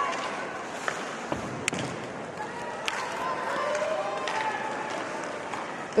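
Ice hockey arena sound during live play: steady crowd murmur with scattered voices and skates on the ice, broken by a few sharp knocks of sticks and puck.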